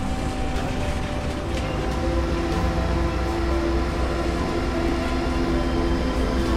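Steady low machinery rumble from a service operation vessel, with a hum of several steady tones that grows stronger about two seconds in.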